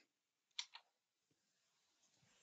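Near silence with a faint computer mouse click about half a second in, followed by a fainter tick.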